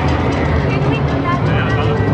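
Steady low mechanical hum from the S&S Free Spin coaster's vertical lift as the train is carried over the top, under background crowd voices.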